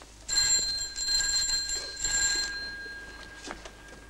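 An electric telephone bell ringing: one continuous trembling ring of about two seconds starting just after the start, then dying away.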